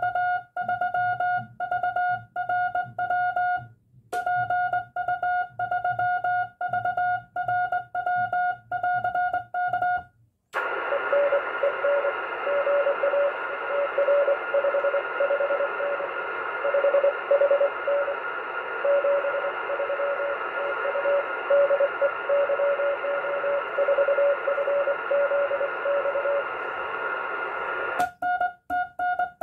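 Morse code (CW) sent with a hand-worked key, heard as a clean sidetone beeping in dots and dashes. About ten seconds in, the transceiver switches to receive: steady band hiss with the other station's weaker, lower-pitched Morse reply coming through it.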